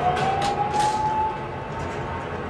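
A single siren-like wailing tone that rises in pitch over the first half-second, then holds high and steady. It sits over a low rumble, with a few sharp clicks in the first second.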